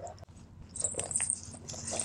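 Light rustling and small clicks as strings are wrapped around a handmade paper journal to close it.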